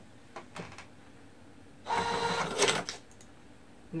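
Epson receipt printer printing a receipt: about a second of steady mechanical whirring that starts a little before the halfway point and stops shortly after. A couple of light clicks come before it.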